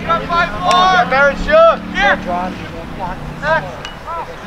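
Several people shouting short calls over one another, with a steady low hum underneath that stops a little before the end.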